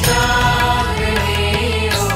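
Gujarati Jain devotional bhajan music: a held melodic line over steady sustained bass and drone tones.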